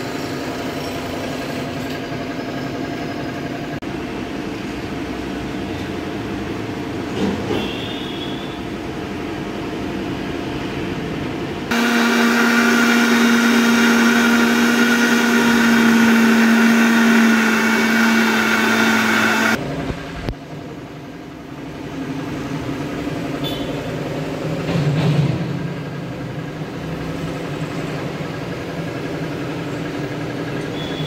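Electric mixer grinder blending watermelon chunks into juice. Its motor runs with a steady whine for about eight seconds, starting about twelve seconds in, then is switched off and stops abruptly.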